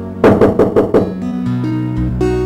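A quick run of about five loud knocks on a door, over soft background guitar music.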